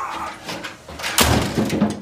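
A car engine thrown onto a pile of other engines in a metal truck bed, landing with one loud metal crash about a second in, after a few smaller knocks as it is lifted.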